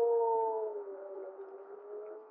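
A large male gray wolf giving one long howl that sinks slowly in pitch and fades away through the second half. The fundamental is lower than average, and the second harmonic is louder than the fundamental, an uncommon pattern that slightly changes the howl's quality.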